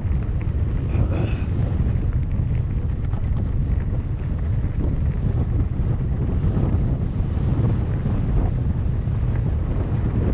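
Strong wind rumbling over the microphone of a camera moving fast along a gravel dirt trail, with a scatter of small crackles from gravel underneath.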